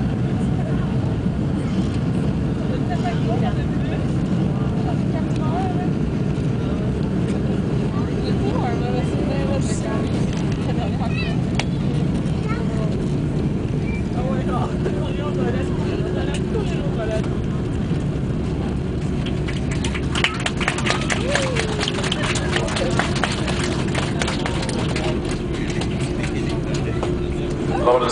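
Airbus A310-300 cabin noise heard from a window seat as the airliner rolls on the runway after landing: a steady low rumble of engines and rolling wheels. About two-thirds of the way through, a busy rattling of cabin fittings joins in and continues to the end.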